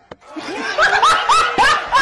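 A short click just at the start, then a person laughing loudly in a quick run of short, high laughs that each rise in pitch, about three a second.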